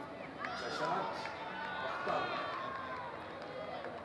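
Several distant voices calling and shouting over one another on a cricket field, high and gliding in pitch, strongest in the first three seconds.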